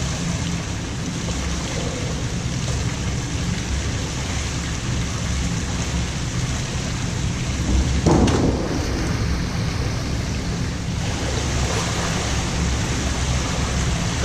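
A diver entering the pool with a splash about eight seconds in, the spray hissing and dying away over about three seconds. A steady rushing noise of the pool hall runs underneath.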